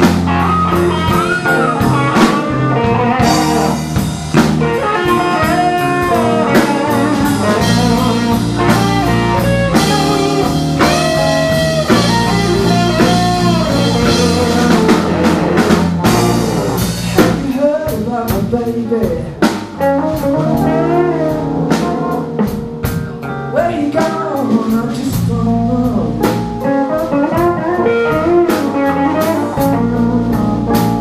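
Live blues band playing an instrumental passage: electric guitar lead with bent notes over electric bass and drum kit.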